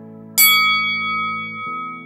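A single bell-like chime struck about a third of a second in and ringing out slowly, over soft background music of sustained keyboard chords. The chime is a timer cue marking the change to a rest interval before the next exercise.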